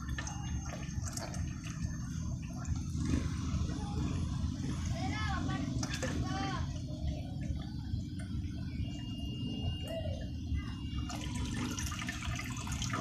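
Water from a garden hose running into an aquarium, a steady low rushing with bubbling at the surface.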